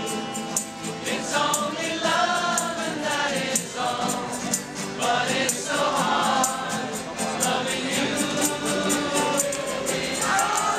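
A large crowd singing together to acoustic guitars, with a steady high shaking or strumming beat about four times a second.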